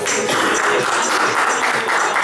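A small group of people clapping, a steady patter of applause.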